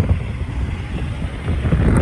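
Wind gusting across the microphone: an uneven low rumble that swells and drops.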